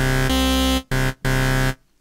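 Synth bass from Ableton's Wavetable synthesizer: a low sub sine one octave below, layered with two slightly detuned oscillators, one an octave higher. It plays a held note that changes pitch about a third of a second in, then two short notes with brief gaps.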